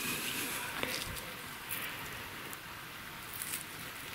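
Gloved hands rummaging through loose soil, dry grass and small stones: faint rustling with scattered small clicks and scrapes.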